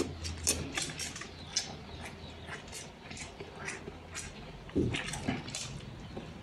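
Close-up chewing and mouth smacking of a person eating instant noodles and bread: a quick, irregular run of wet clicks, with a louder burst a little before the end.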